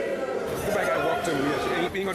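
A woman's voice crying out without words in rejoicing praise, its pitch wavering up and down.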